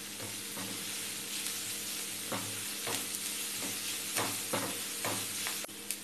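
Onions and cumin frying in oil in a white nonstick pan, a steady sizzle, as a black spatula stirs in freshly added ginger, green chilli and garlic paste, scraping across the pan every half second or so.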